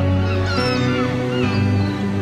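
Gulls crying in several short gliding calls over held synthesizer chords and a deep bass note.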